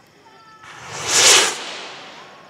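Hobby rocket motor firing at launch: a sudden loud rushing hiss that starts about half a second in, swells for about a second, then fades away.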